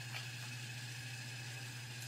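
Quiet, steady low hum with a faint hiss over it: room background with no distinct event.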